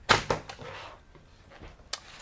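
Removable plastic battery being released and slid out of an HP laptop: a sharp clack as it comes free, a brief scraping slide, then another short plastic click near the end as the battery and laptop are handled on the desk.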